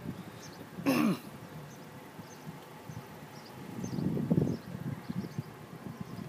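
A person's short vocal sound, like a throat clearing, about a second in, over faint outdoor background noise. A low muffled rumble comes around four seconds in.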